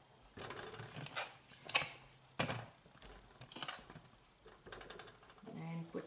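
Whole tomatillos dropped one at a time into a stainless steel pan of water, giving a series of short, irregular knocks and plops about once a second.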